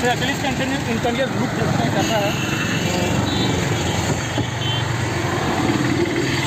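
Street traffic with car and motorbike engines passing, and indistinct voices in the first half; the engine rumble is strongest in the second half.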